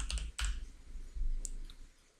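Computer keyboard keys clicking as a word is typed in: one sharp click about half a second in and a couple of fainter ones near the end, over a low rumble that fades out.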